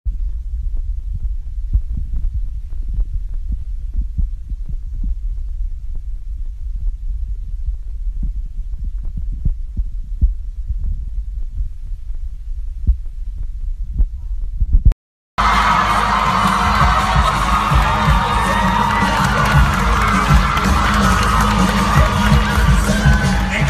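A low, muffled thumping with only deep tones for about fifteen seconds. It cuts to silence for a moment, then gives way to loud hall sound: a crowd with music and amplified voices.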